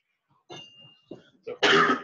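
A person coughing: a loud, sudden cough about one and a half seconds in, after a moment of near quiet.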